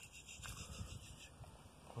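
Faint splashing and trickling of shallow water as a hand releases a tiny bluegill back into a creek's edge, over a low rumble.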